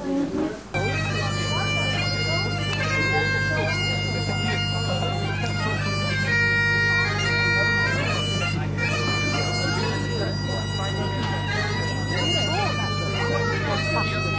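Scottish bagpipes playing a tune over their steady drones, which start abruptly about a second in.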